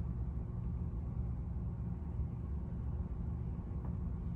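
Steady low background rumble of room noise, with no distinct events.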